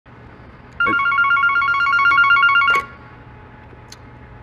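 A telephone rings once: a warbling electronic ring about two seconds long, starting just under a second in. A faint click follows near the end.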